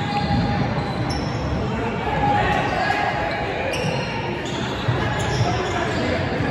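Echoing gymnasium sound of a basketball game in play: a ball bouncing on the hardwood court under the steady chatter of spectators' voices.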